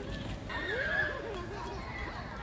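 A small child's high, wavering squeal that starts about half a second in and lasts under a second.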